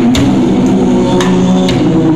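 Live band music: electric guitar and bass guitar sustaining notes over a drum kit, with a few sharp drum hits.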